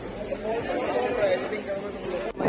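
Indistinct chatter of people's voices, with no words clear.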